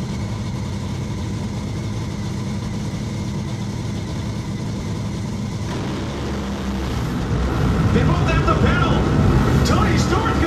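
A Top Fuel dragster's supercharged V8 idles with a steady low rumble. About seven seconds in it grows louder and rougher.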